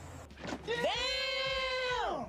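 A long, drawn-out high-pitched vocal cry from an inserted meme clip: it rises in, is held steady for about a second, then slides down and falls away at the end.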